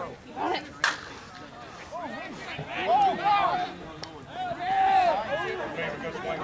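A softball bat striking a pitched ball with one sharp crack about a second in. Loud shouting from players follows.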